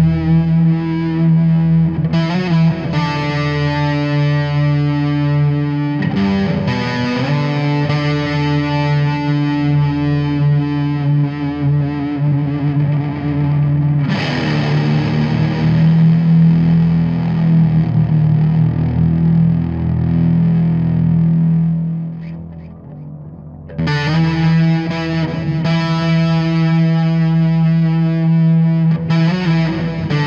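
Live rock band playing an instrumental passage: electric guitar with distortion and effects over a steady held low note. The sound thins out briefly about three-quarters of the way through, then the full band comes back in abruptly.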